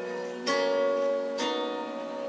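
Homemade ten-string kantele-style zither with metal strings, plucked two strings at a time to sound intervals: one interval struck about half a second in and another about a second later, each ringing on with a clear, bell-like sustain.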